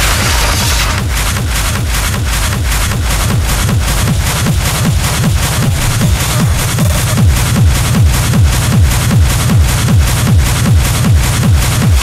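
Hard techno from a DJ mix, driven by a fast, steady kick drum. The deep low end of the kick grows stronger from about four seconds in.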